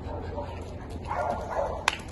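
A dog gives one short, rough bark about a second in, followed by a single sharp click near the end.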